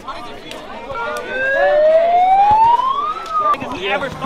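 A siren wail: one smooth rising tone that climbs for about two seconds, dips slightly and then cuts off, over crowd chatter.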